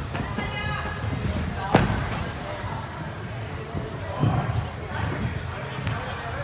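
Dull thuds of gymnasts' feet and landings on padded tumble tracks and mats, with one sharp bang about two seconds in, under children's chatter in a large, echoing gym hall.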